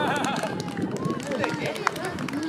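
Several children's voices calling and shouting over one another across an outdoor football pitch, with a single sharp knock near the end.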